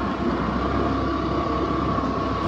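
A vehicle travelling steadily over a rough dirt road: a low, even engine drone with a faint steady tone above it, mixed with road and wind noise.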